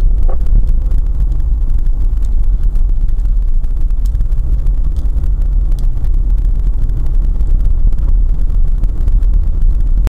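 Steady low rumble of a car driving, recorded from a dashcam inside the cabin: engine and road noise, with faint scattered ticks.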